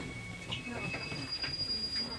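Seoul Metro Line 2 train's wheels squealing on the rails, heard inside the car over the low rumble of the running train: a high steady squeal that steps up in pitch twice, the last and highest tone starting about a second in.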